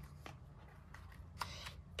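Faint rustling and soft clicks of paper as a page of a hardcover picture book is turned, with a slightly louder rustle about a second and a half in.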